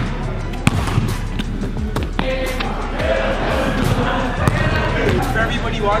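A basketball bouncing on a gym floor several times at irregular intervals, over steady background music.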